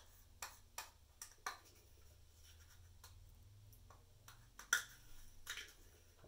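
Metal spoon scraping and tapping thick aloe vera gel out of a small measuring cup: scattered light clicks, with a sharper one near the end, over a faint low hum.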